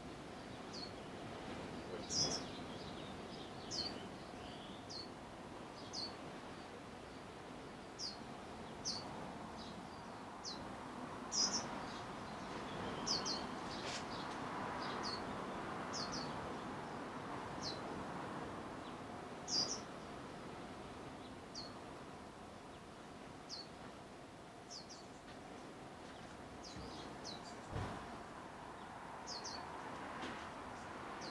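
Short, high bird chirps, one every second or two, over steady background noise.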